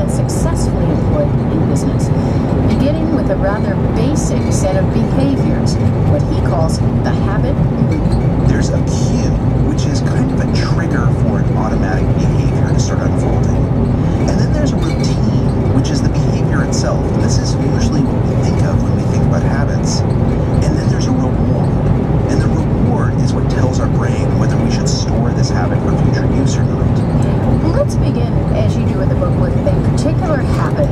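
Car driving along a road, with steady road and engine noise and a radio talk programme playing faintly underneath.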